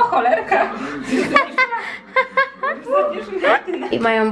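Women's voices chuckling and laughing, with a string of short, repeated sung syllables.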